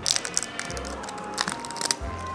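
Screw cap of a plastic bottle being twisted open. Crackling clicks come in two runs, one at the start and one about a second and a half in, as the cap gives way.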